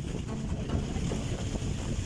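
A small boat's engine running steadily under way, with wind on the microphone.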